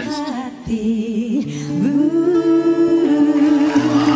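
Three female vocalists singing together in close harmony, holding long notes.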